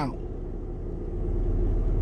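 Low, steady vehicle rumble heard from inside a car's cabin, slowly growing a little louder toward the end.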